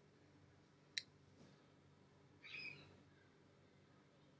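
Near silence: room tone, with one sharp mouse click about a second in and a brief faint scratchy sound a little past the middle.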